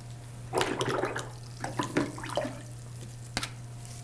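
Wet paint and water worked with a flat paintbrush: a run of irregular swishing and dabbing strokes through the first half, then a few light taps, over a steady low hum.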